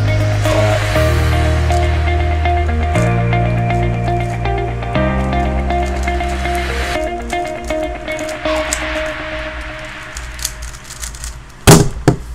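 Background music with a bass line changing chord about every two seconds, fading over the second half, with faint clicks of a 3x3 speedcube being turned. About a second before the end comes a loud clack as the cube is set down on the mat and the hands slap a StackMat timer's pads to stop it.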